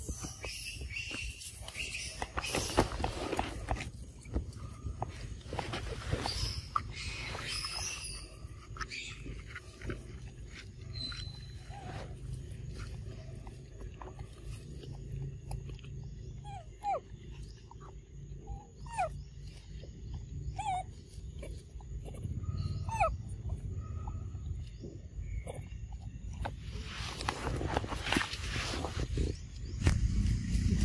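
Macaque calls: short rising squeaks, about one a second through the middle of the stretch, over the rustle of animals moving, which comes in bursts near the start and near the end.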